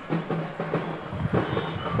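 Drums beating in a fast, uneven rhythm over a steady low hum.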